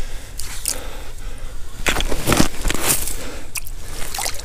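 Crunching and scraping on snow and ice in irregular bursts, loudest a little past the middle, as a northern pike is hand-lined up and pulled out through an ice-fishing hole.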